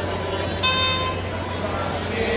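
A single short, high toot from a horn, lasting under half a second, about half a second in, over the murmur of a crowd.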